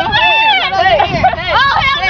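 Several high-pitched young voices talking and calling out over each other, loud, with no clear words.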